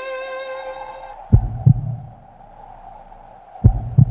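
Heartbeat sound effect in a film score: double lub-dub thumps, twice, over a low sustained drone, as a held string chord fades out in the first second.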